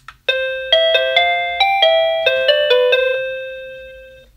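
A SadoTech RingPoint driveway-alert receiver plays its doorbell chime ringtone: a short tune of about nine quick notes, the last one ringing on and fading out.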